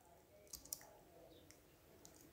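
Near silence with a few faint computer keyboard key clicks, the loudest about three quarters of a second in.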